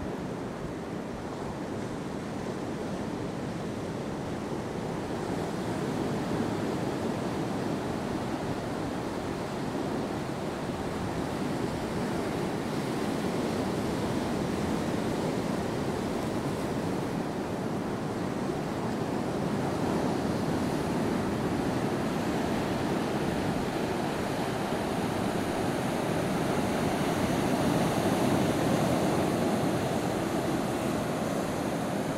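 Ocean surf breaking and washing over a flat rock shelf and onto the beach: a steady rushing wash of waves that slowly grows louder toward the end.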